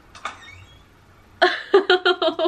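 A woman's high-pitched squealing giggle: a fast run of short voiced pulses that starts abruptly about one and a half seconds in.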